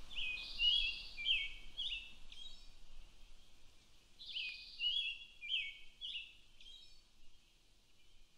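A songbird singing the same short phrase of chirps and falling whistles twice, about four seconds apart, over a faint low hum.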